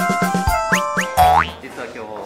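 Short comic music sting: a quick run of short repeated notes with rising, boing-like glides, the last and loudest about a second and a quarter in. It stops at about a second and a half, giving way to fainter background noise.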